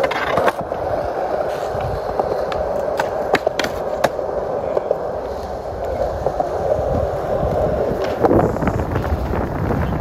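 Skateboard wheels rolling over smooth concrete: a steady, loud rumble with scattered sharp clicks, and a louder bump about eight seconds in.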